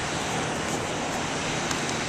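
Steady, even rushing noise of open-air ambience, with no distinct events.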